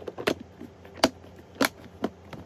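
Snap-lock latch flaps on a clear plastic cereal container's lid clicking shut: about three sharp plastic snaps, spaced roughly half a second apart.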